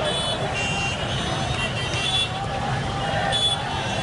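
A large crowd's voices mixed with road traffic, in a steady din. Short high-pitched tones come and go above it several times.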